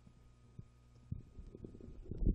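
Faint steady low hum, with soft, irregular low thuds starting about halfway through.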